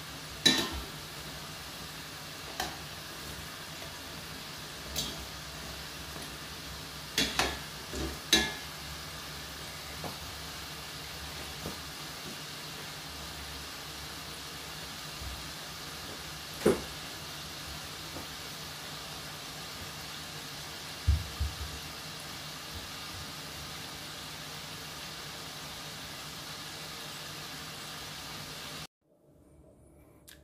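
Festival dumplings deep-frying in vegetable oil in a stainless steel pot: a steady sizzle, broken by about ten sharp metallic clicks of tongs against the pot, most in the first eight seconds. The sizzle cuts off suddenly near the end.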